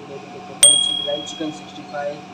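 A single sharp metallic ding about half a second in, ringing on one clear high tone for about a second.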